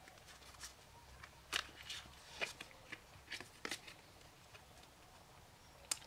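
Oracle cards being shuffled by hand: a few faint, scattered flicks and taps, then a sharper click near the end as a card is laid on the table.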